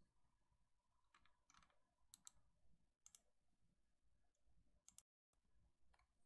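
Near silence with a few faint, short clicks about two, three and five seconds in; just after five seconds the sound cuts out completely for a moment.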